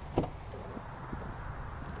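Rear liftgate of a Kia Soul being unlatched and raised: one sharp latch click a fraction of a second in, then a few faint ticks over a low, steady rumble.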